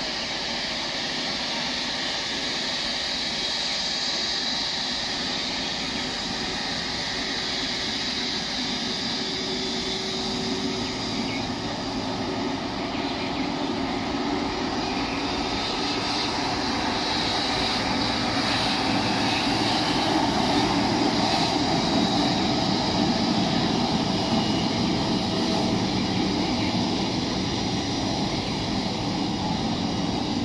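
Twin-engine wide-body jet airliner's turbofan engines running at taxi power as the plane moves along the runway: a steady jet rush with a high whine, growing louder a little past the halfway point.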